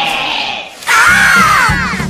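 A held note fades out, then several cartoon voices yell together for about a second, their pitches swooping up and down.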